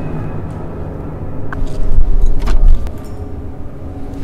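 Someone getting into a car: a few sharp clicks of the door and low thuds against a low rumble, loudest about two seconds in.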